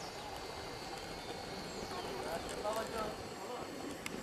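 Horse pulling a two-wheeled cart along a dirt road, its hooves clip-clopping. Faint voices come in about two and a half seconds in.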